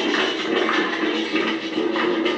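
Boi de mamão folk music with singing and percussion, playing steadily.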